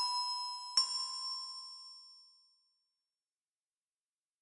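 Opening jingle of bright, bell-like chime notes: one struck right at the start and a second just under a second in, each ringing out and fading away by about two seconds in.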